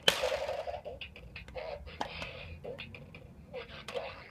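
A Bop It Extreme 2 toy's small speaker playing its beat and voice calls, slow, crackling and distorted from nearly flat batteries, with a few sharp clicks.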